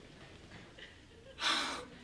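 A single short, sharp breathy gasp about one and a half seconds in, after a quiet stretch.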